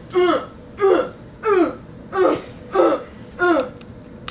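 A person's voice letting out short grunts, each falling in pitch, six times at an even pace of about three every two seconds, during rough play-fighting.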